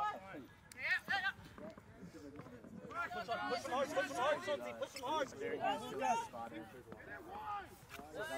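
Several voices shouting and calling out, unclear and overlapping, from players and spectators at a rugby sevens match: a high shout about a second in, then many voices calling at once from about three seconds on.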